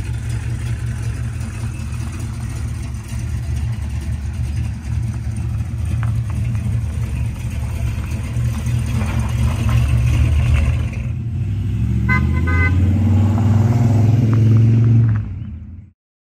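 Big-block 454 V8 of a first-generation Chevrolet Camaro, with a mild cam, running with a steady low rumble, then revving up louder as the car pulls away. A short car horn toot about twelve seconds in; the sound cuts off just before the end.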